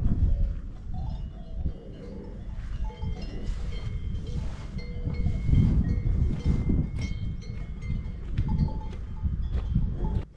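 Wind buffeting the microphone in uneven gusts, with faint, intermittent clanking of cowbells from grazing cattle.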